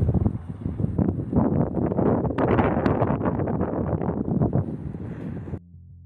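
Wind buffeting the phone's microphone, a heavy rough roar with gusty surges, as a powder avalanche sweeps down the mountainside. It cuts off suddenly near the end, leaving a faint low hum.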